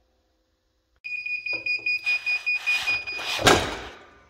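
Heat press timer beeping from about a second in, signalling that the pressing time is up. Then the press is opened, with rustling and one loud clunk about three and a half seconds in as the upper platen swings up.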